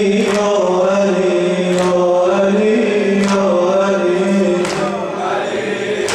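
A male reciter chants a Persian Shia mourning lament (noheh) in long, drawn-out, slowly wavering notes. Sharp slaps of mourners' chest-beating fall steadily about every second and a half, keeping the lament's beat.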